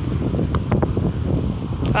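Wind buffeting the microphone: a steady, loud low rumble.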